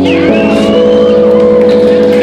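Loud recorded dance music: a sustained chord of several held notes, with a thin high tone sliding upward during the first second.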